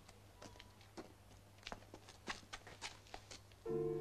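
Faint, irregular footsteps and scuffs in a small room. Near the end, music comes in loudly with a held chord.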